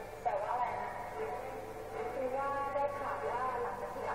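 Thai TV drama dialogue: a person speaking in short phrases, played through a television's speaker.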